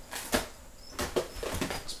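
Cardboard box and packaging being handled: a string of light knocks and clicks with soft rustling as things are moved about inside the box.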